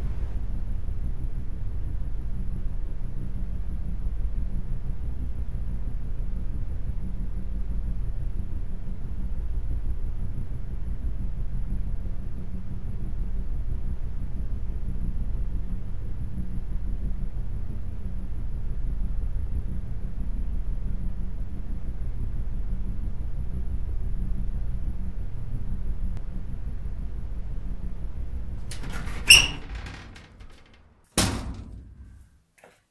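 A steady low hum that fades out near the end, followed by one sharp click.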